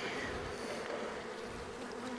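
Honeybees buzzing around an opened hive box, a steady hum.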